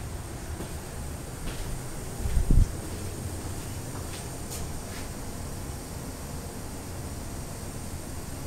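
Low, steady rumble with handling noise from a handheld camera being moved around, a few faint clicks, and one heavy low thump about two and a half seconds in.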